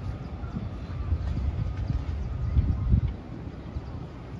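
Footsteps on grass and wind rumbling on a phone's microphone as it is carried along, with irregular soft thumps that are loudest about two and a half to three seconds in.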